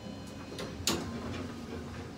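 Quiet indoor background noise with a few faint ticks and one sharp click about a second in.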